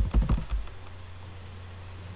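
Computer keyboard keystrokes: a quick run of several key presses in the first half second or so, typing the TR shortcut for AutoCAD's Trim command. A steady low hum runs underneath.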